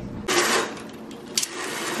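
A fabric roller window shade being handled: a short rustle, then light rattling clicks.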